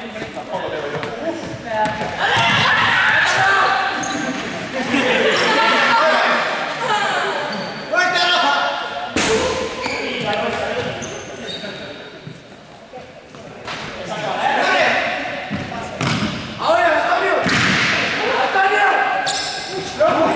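Several players' voices calling out over one another while a small game ball is thrown and strikes the floor and walls with a few sharp thuds, all ringing in an echoing sports hall.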